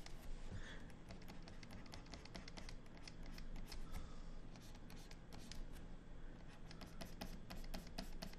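Faint scratching and light tapping of a stylus nib on a drawing tablet's screen, many short quick strokes, over a low steady hum.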